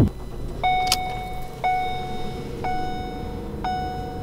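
A Ford car's dashboard warning chime sounds four times, about once a second, over the low steady hum of the engine idling just after the key is turned. There is a single click about a second in.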